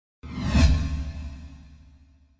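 A logo whoosh sound effect over a deep low rumble: it starts suddenly about a quarter of a second in, swells to its loudest just after half a second, then fades away.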